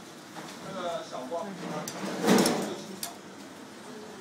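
Voices talking in a busy commercial kitchen, with a brief loud rushing noise a little over two seconds in and a few sharp clicks around it.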